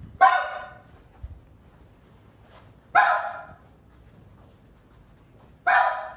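Three short, loud shouted calls from men's voices, about three seconds apart, each lasting about half a second.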